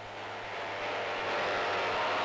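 Speedboat running at speed: a steady rushing sound of engine and spray that grows louder, with a constant low hum underneath.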